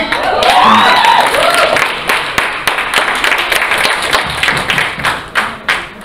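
Audience applauding, with voices cheering at the start. The clapping thins out to a few scattered claps near the end.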